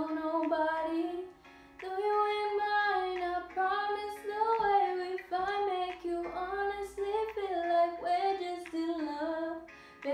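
A young woman singing solo in long, gliding held notes, phrase after phrase, with a short break about a second and a half in.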